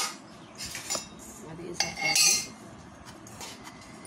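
A metal spoon scraping and clinking against a stainless steel bowl as carrot rice is spooned into it, in a few separate strokes, the loudest about two seconds in.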